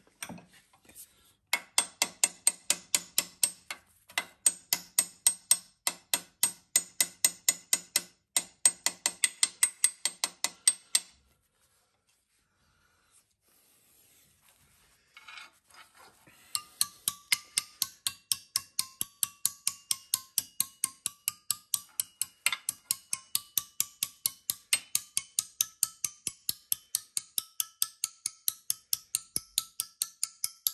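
Ball-peen hammer tapping rapidly on a short piece of galvanised sheet steel held in a steel-angle folding tool in a bench vise, folding it over. The strikes come about four or five a second in two long runs, with a pause of a few seconds between them.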